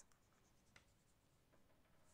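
Faint scratching of a pen writing on paper, a few short strokes over near silence.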